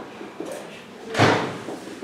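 A single loud bang about a second in, over faint room sound.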